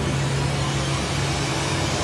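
Boat engine running at a steady low hum, with wind and sea noise around it.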